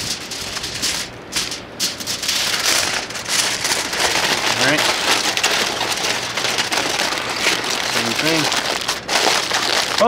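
Aluminium foil crinkling and crackling continuously as hands roll and crimp its edges tightly around a wrapped rack of ribs to seal the packet.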